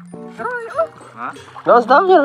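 Background music: a song with a singing voice over long held notes, the voice getting louder near the end.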